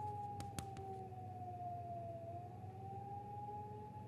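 A sustained high, siren-like tone that slowly dips in pitch about two seconds in and rises back, over a fainter lower tone and a low hum. Two sharp clicks come about half a second in.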